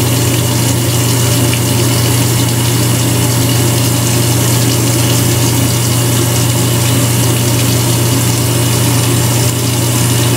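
Cordless electric trimmer running with a steady low hum as it is worked over the face and neck.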